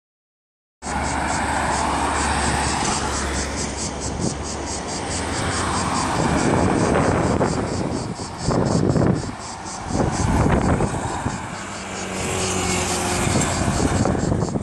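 Street traffic picked up by a smartphone microphone: a steady road noise as cars drive through an intersection, starting about a second in, with a couple of louder passes past the middle.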